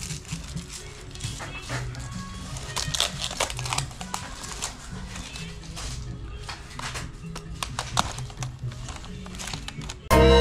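Thin plastic food packaging crinkling and crackling in short, irregular bursts as a wrapped convenience-store bento and its disposable chopsticks are unwrapped, over background music with a steady bass line.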